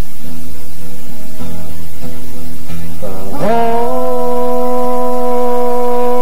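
Live acoustic duo: two acoustic guitars strumming chords with a male singing voice. About three seconds in, the voice slides up into one long held note with a slight vibrato.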